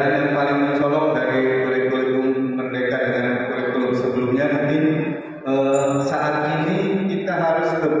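A man's voice chanting long, held, wavering notes in phrases, with a short break about five seconds in.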